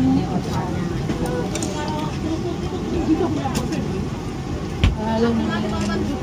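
Background chatter of diners in a busy eatery, several voices overlapping, with one sharp knock near the end.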